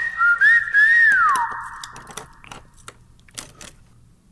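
A high whistle holds one tone, wavers, then slides down in pitch about a second in and fades out. Scattered small clicks follow as a metal pick works at a lock.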